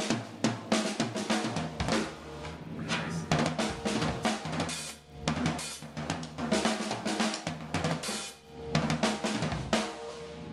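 Ellis Drum Co. custom drum kit with maple, cedar and walnut inlay shells, played with sticks: a busy pattern of snare, bass drum and cymbal strikes. The playing briefly thins out about halfway through and again near the end.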